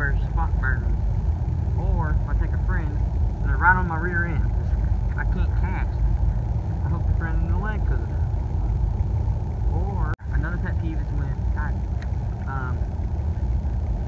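A young man talking over a steady low rumble. The audio cuts out for an instant about ten seconds in.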